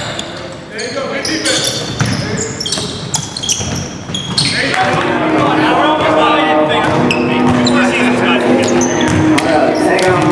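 Basketball game in a gym: sneakers squeaking on the hardwood and the ball bouncing, echoing in the hall. About halfway through, a louder, steady mix of overlapping voices and held notes takes over.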